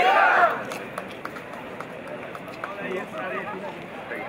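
Indistinct overlapping voices of people chatting, loudest in the first half second, then settling to a lower murmur with a few short sharp clicks.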